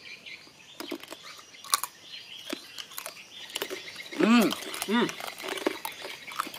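Crunching and chewing of crispy fried pork skin, a scatter of sharp crackly crunches, followed by two short vocal 'mm' sounds a little past the middle.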